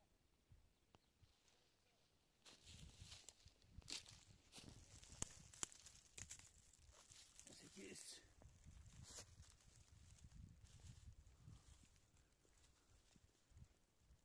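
Faint rustling and crackling of dry pine needles and oak leaves, handled and stepped on, in irregular spells from about two seconds in, with a few sharper snaps.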